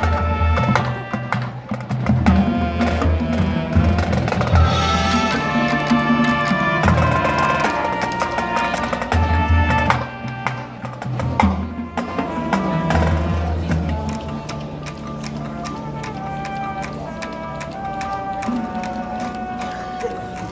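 Marching band playing live: brass (trumpets, mellophones, sousaphone) over a front ensemble of marimbas and other mallet percussion, with heavy low notes and quick mallet strikes. It grows softer and more sustained about two thirds of the way through.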